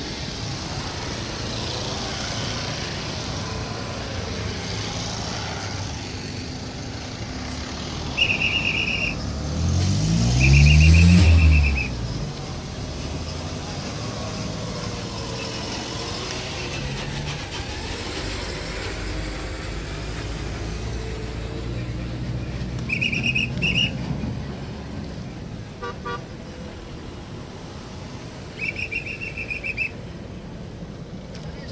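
Road traffic passing on a bridge, with vehicle horns honking in four short high blasts: about 8 and 10 seconds in, again around 23 seconds and near the end. A vehicle passes close about 10 seconds in with its engine note rising, the loudest sound.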